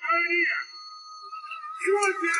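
A man shouting defiant lines in a film scene, over background music, with a single steady tone held for about a second between the two shouts.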